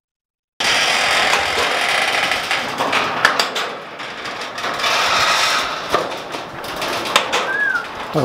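Sectional garage door moving on its tracks: a loud, steady rattling noise that starts suddenly, with a few sharp clicks along the way and a brief high squeak near the end.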